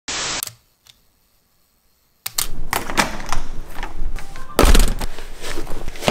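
A short hiss at the very start, then near silence for about two seconds, then quick, irregular knocks and scuffs of sneaker footsteps on a hard tiled floor, with a heavier thump just before five seconds in.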